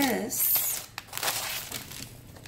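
Plastic packaging crinkling and rustling as cellophane-wrapped craft papers and a plastic bag are handled and shifted, in two or three short irregular spells.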